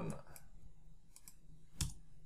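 Computer mouse and keyboard clicks: a few faint clicks, then one sharper click near the end, over a faint steady hum.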